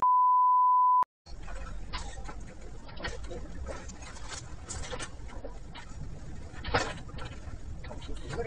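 A loud, steady censor bleep at a single pitch lasting about a second and cutting off abruptly, followed after a brief dropout by background noise with scattered clicks and faint voices.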